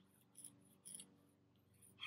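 Faint scratchy rubbing of soft pastel on rough asphalt, two short strokes about half a second apart, over near silence.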